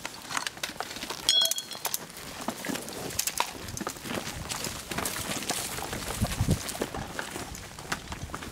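Footsteps and field-gear handling on dry, leaf-littered ground: scattered clicks, scuffs and knocks as a mortar aiming stake is set into the earth, with a short ringing metallic clink about a second and a half in.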